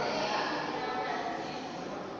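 Indistinct voices of people talking, drawn out and sing-song enough to resemble an animal call.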